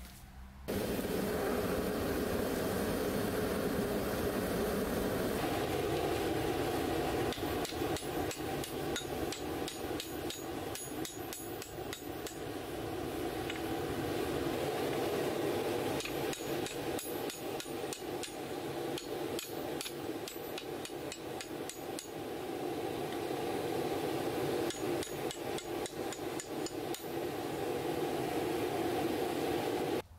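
A hand sledge hammer strikes a red-hot leaf spring on a block anvil. Rapid runs of sharp metal blows begin about seven seconds in and carry on to the end, over a steady rushing noise.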